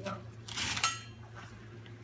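A scuba tank's cam strap and buckle being handled: rustling of the strap and a sharp clink with a brief ring just under a second in.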